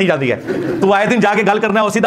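A man's voice speaking emphatically, with a pitch that rises, falls and wavers in a sing-song way. There is a short pause about half a second in.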